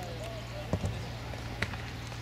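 Dull thuds of a football being struck during a goalmouth scramble: two close together about three-quarters of a second in, and another a little after one and a half seconds, with distant players' shouts.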